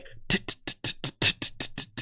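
A fast, even run of hi-hat ticks, about eight a second: a trap-style hi-hat pattern of the kind that makes the rap over it sound off the beat.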